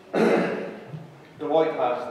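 A man clears his throat once, loudly, just after the start, a harsh noisy rasp of about half a second. He then goes on speaking.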